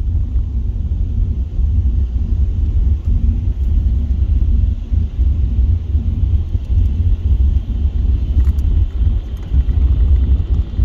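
Low, steady rumble of a car driving on a wet road, heard from inside the cabin.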